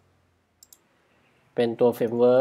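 Two quick, faint computer clicks a little way in, then a man's voice starts speaking near the end.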